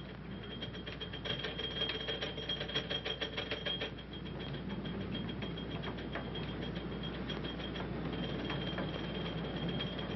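A 1930s gasoline pump running while a car is filled. Its meter mechanism clicks rapidly for about four seconds, then settles into a steady mechanical run with fainter, sparser ticks.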